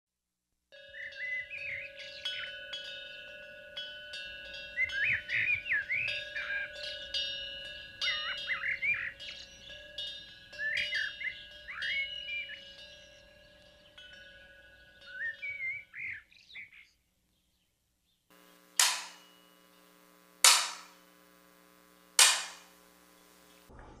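Small birds chirping and singing in short repeated phrases for about sixteen seconds over a faint steady tone. After a short pause come three sharp strikes, each about a second and a half apart.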